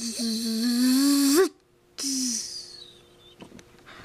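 A voice making a buzzing zap sound effect for a pretend defibrillator: a long, loud hummed buzz with a hiss over it that rises in pitch at its end, then a short second buzz about two seconds in.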